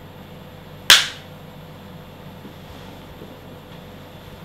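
Clapperboard sticks snapped shut once, a single sharp clap about a second in, the slate's sync mark for the take.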